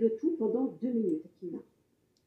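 Speech only: a voice talking in short phrases, which stops about one and a half seconds in.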